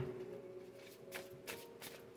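Faint tarot cards being shuffled by hand, a few soft flicks and taps from the deck.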